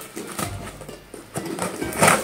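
Knife blades slicing and scraping through packing tape on cardboard boxes, heard as many short scratches and clicks, over quiet background music.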